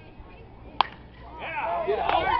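A metal baseball bat hits a pitched ball with one sharp crack about a second in. Near the end, spectators start shouting and cheering as the ball carries deep.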